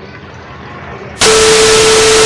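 Faint outdoor background, then about a second in a loud TV-static sound effect begins: an even white-noise hiss with a steady tone through it, laid over a glitchy colour-bar transition.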